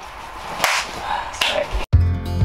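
A high-five: one sharp slap of two hands meeting, a little over half a second in, followed by a weaker, shorter burst of sound.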